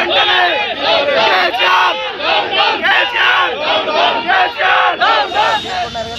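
A crowd of protesters shouting slogans together, loud, with many voices overlapping.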